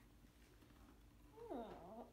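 A domestic cat meows once near the end, a single call that slides down in pitch, over a quiet room.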